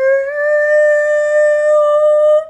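A woman's voice singing one long, steady wordless note on an open vowel. It starts abruptly and rises slightly in pitch just after the start.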